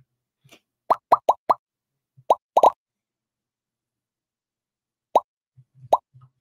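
Short pop sound effects from a Quizizz online quiz lobby, about nine of them in quick clusters with a silent stretch in the middle. Each pop marks a player joining the game.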